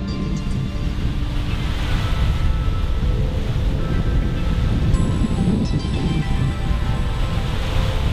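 Water sound of waves washing in slow swells, with soft background music of held tones over it.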